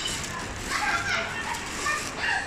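Background chatter of passers-by, with high-pitched children's voices.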